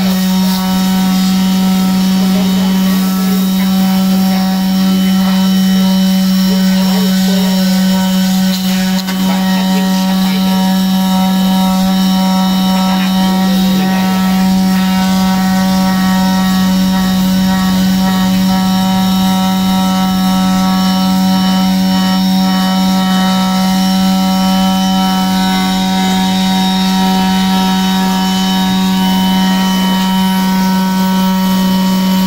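Makita DBO380 18V brushless cordless finishing sander running steadily with its pad sanding an aluminium car wheel: an even buzz held at one pitch, with no change in speed.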